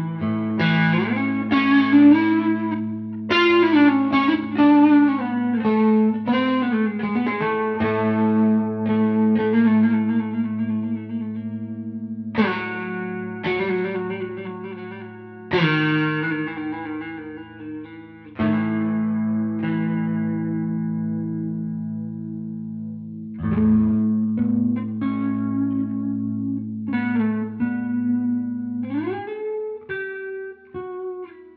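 Telecaster-style electric guitar played on two strings: the open A string rings as a steady low drone while a melody is picked on the D string. Some melody notes have bends and vibrato. The drone stops about a second before the end.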